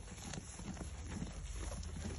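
Sheep pulling at and chewing hay, with rustling and irregular crunching clicks of dry hay close by.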